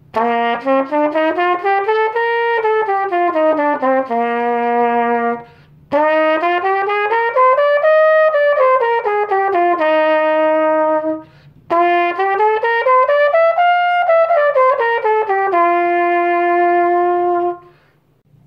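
A 1969 Holton T401 Galaxy nickel-silver trumpet, played with its Holton 7C mouthpiece, runs three tongued scales. Each goes up about an octave and back down, then ends on a held note, and each run starts a step higher than the last.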